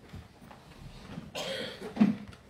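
A single cough from someone in the congregation, a short rough burst about one and a half seconds in, over a faint low background.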